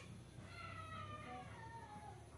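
A faint, high-pitched call, drawn out and falling slowly in pitch over about a second and a half.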